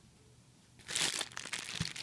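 Clear plastic bags of wax melts crinkling as they are handled and moved, a dense run of crackles starting just under a second in.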